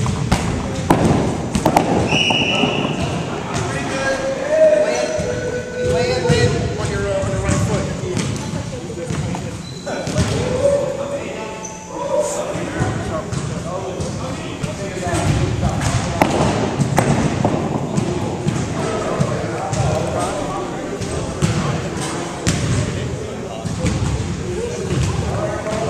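Indistinct chatter of a group of people in a large gym, with repeated thuds of balls bouncing on the hardwood floor.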